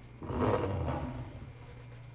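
A brief rumbling rustle of about a second, starting just after the beginning: handling noise close to the phone's microphone as an arm and hand move right in front of it.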